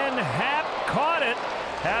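Male TV play-by-play voice calling a shallow fly ball, drawn-out and rising and falling in pitch, over steady stadium background noise.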